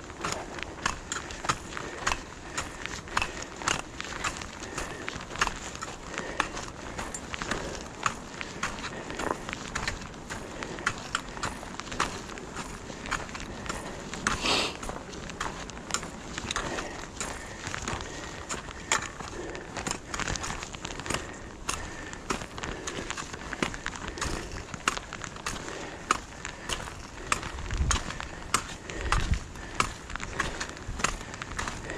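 Footsteps on a gravel-and-dirt hiking trail, steady, about two to three steps a second, over a constant outdoor hiss.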